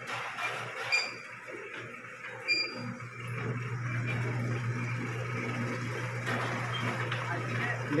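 A tomato sorting conveyor running with a steady low machine hum that gets louder about three seconds in. A few light clicks and knocks come in the first three seconds.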